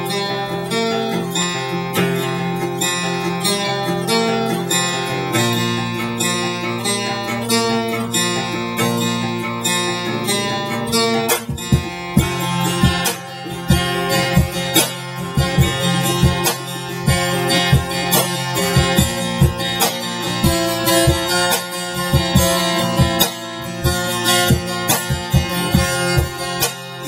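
Acoustic guitar playing a song's instrumental intro, its notes ringing. About halfway through, a cajon comes in under it with a steady beat.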